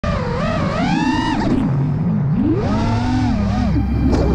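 FPV quadcopter's motors and propellers whining, the pitch rising and falling again and again as the throttle is worked. A steady low hum comes in near the end.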